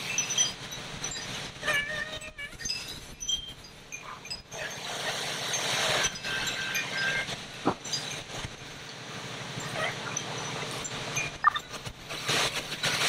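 An engine running steadily with a low hum, with hiss over it and scattered knocks and brief tones, a sharp knock about two-thirds of the way in.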